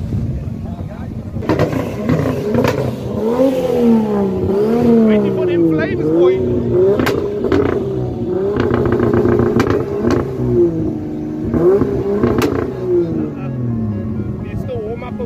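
Toyota 86's flat-four engine revved over and over as the car creeps past, its note climbing and falling every second or so, with a few sharp cracks among the revs.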